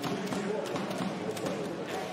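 Basketball arena crowd noise with several sharp knocks from the ball and players on the hardwood court.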